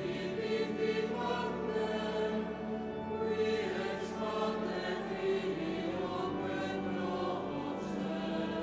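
Choir of many voices singing a sacred liturgical piece, with held notes that move slowly from one to the next.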